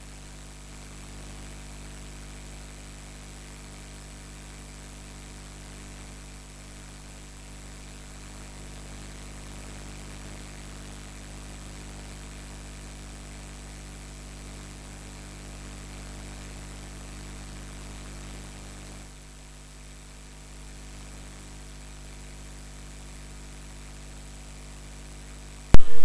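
Steady hiss with a low electrical hum and faint steady tones underneath. No other event stands out; the hiss drops slightly a little past two-thirds of the way through.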